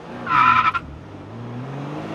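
Car sound effect: a brief, loud tyre screech about half a second in, over an engine that keeps running and slowly rises in pitch.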